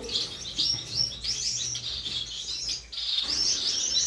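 Many caged Gouldian and Bengalese finches chirping together: a continuous chorus of short, high calls overlapping one another.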